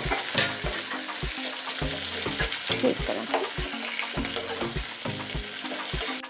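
Capsicum and onion chunks sizzling in hot oil in a metal kadhai as they are stir-fried with a flat metal spatula, which scrapes and taps against the pan about three times a second.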